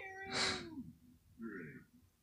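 A short cry, held on one pitch with a breathy hiss over it and dropping away under a second in, from an animated film's soundtrack played through a TV speaker; a brief softer voice-like sound follows about a second later.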